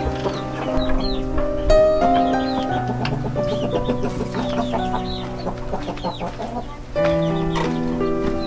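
Chickens clucking over background music of long, held notes with a steady bass.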